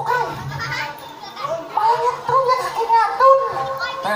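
The masked penthul clown talking into a microphone over the PA in a very high, childlike comic voice.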